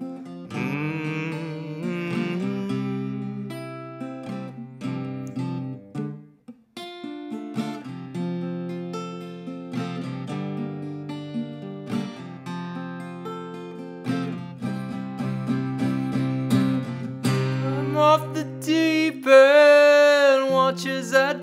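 Acoustic guitar strumming and letting chords ring in an instrumental passage, with a brief pause about six seconds in. Near the end a man's voice comes in on a held, wavering note.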